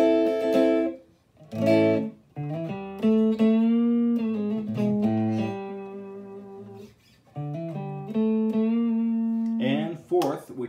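Fender Telecaster electric guitar played clean through a Fender '57 Twin amp. A ringing chord dies away about a second in, then comes a strum and a run of chords and single notes, some slightly bent, each left to ring. A voice starts near the end.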